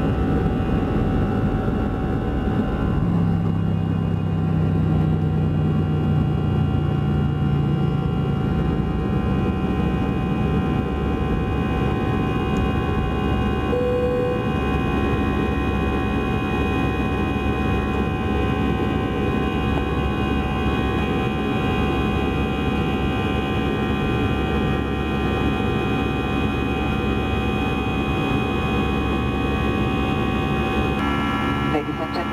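Airbus A320 jet engines at takeoff thrust, heard inside the cabin from a window seat over the wing: a steady engine roar layered with several high fan whines, through the takeoff roll and climb-out. A deeper drone swells for several seconds shortly after the start.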